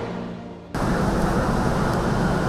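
The end of a news programme's intro theme music, fading out. About three-quarters of a second in it cuts suddenly to steady background room noise.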